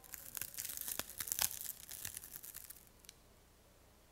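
A dense run of faint crackling clicks for about three seconds, thinning out, with one last click a moment later.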